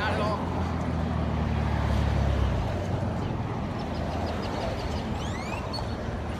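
Road traffic: a vehicle passing close by, its low engine and tyre rumble swelling about two seconds in and then fading, over steady road noise. A few faint high chirps sound near the end.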